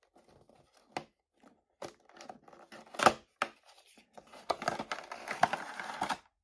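Toy packaging being opened by hand: a few sharp clicks and snaps of the cardboard box and its clear plastic blister, the loudest about three seconds in. From about four and a half seconds in come a couple of seconds of plastic crinkling and rustling as the blister tray slides out of the box.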